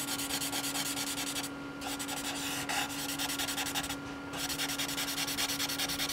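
A compressed charcoal stick scratching across tempera-painted sketchbook paper in quick, short back-and-forth strokes, with two brief pauses, over a steady low hum.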